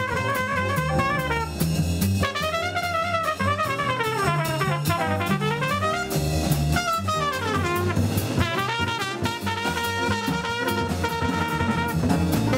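Live small-group jazz: a trumpet solos in sweeping runs that climb and fall, over walking upright bass, piano and a drum kit with cymbals.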